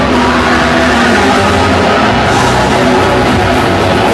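Live grindcore band playing loud, dense and continuous music.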